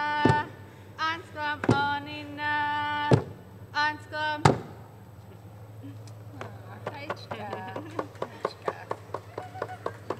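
A woman singing in long held notes to a hand drum struck about once every one and a half seconds; the song ends on a final drum beat about four and a half seconds in. Scattered hand clapping and faint voices follow in the second half.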